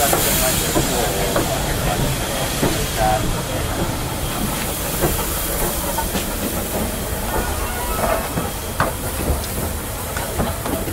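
Steam hissing steadily from the J72 0-6-0 tank locomotive No. 69023, loudest and sharpest in the first moment and easing a little after.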